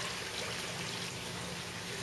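Steady trickle of running water with a faint low hum underneath.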